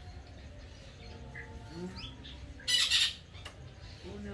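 A green parrot gives one short, harsh squawk about three seconds in.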